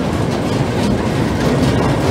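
Steel loop-coaster train rolling around its circular track, a steady rumble of wheels on rail.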